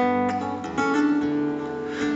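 Acoustic guitar playing chords between sung lines, a new chord struck about three-quarters of a second in and left ringing.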